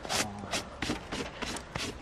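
A small hand brush sweeping a light dusting of snow off an insulated fabric windscreen cover, in quick repeated swishes, about four a second.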